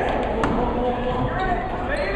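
Basketball game in a gym: spectators' and players' voices over the hall's background noise, with one sharp knock of the ball on the hardwood court about half a second in.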